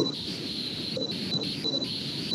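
Low background hiss on a video-call microphone, with a thin, steady high-pitched tone that breaks off a few times.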